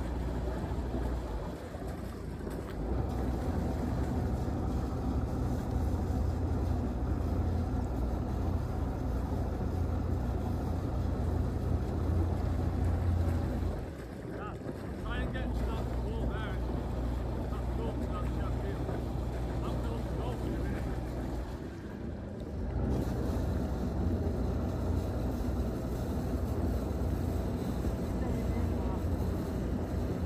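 A river cruiser's inboard engine running at low speed, a steady low hum that briefly drops away three times, with some wind on the microphone.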